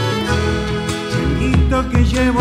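Live Argentine folk band playing a chacarera, with acoustic guitars, violins and accordion over a steady low rhythm. A man's voice comes in singing near the end.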